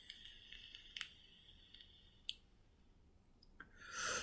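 Faint hiss with a few small clicks as a Juul vape is drawn on, the last click a little over two seconds in. A short rush of breath near the end.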